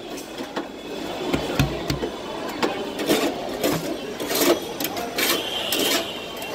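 Two metal spatulas chopping and scraping ice cream mix on a cold steel pan: a fast, irregular run of metal clacks and scrapes, with a few dull thuds about one and a half to two seconds in.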